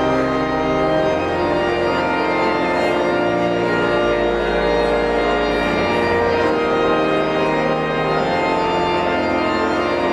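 Organ music: sustained chords over a bass line that shifts to a new note every couple of seconds.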